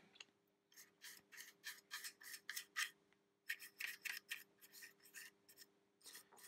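A paintbrush scrubbing weathering wash into the gussets of a model hopper wagon: faint, quick rubbing strokes, about three a second, with a short pause about halfway.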